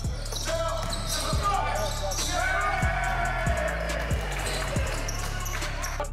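Live game sound from a basketball court: a ball bouncing and players' voices. A hip-hop beat plays under it, thinned to its bass and kick drum for most of the stretch.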